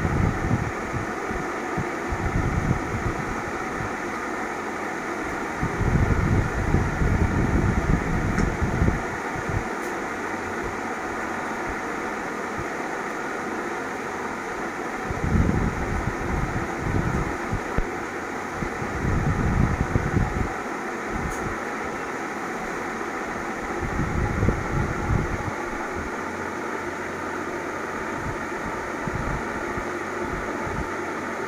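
Steady machine whir like an electric fan running, with low rumbling bursts several times, at about 6, 15, 19 and 24 seconds in.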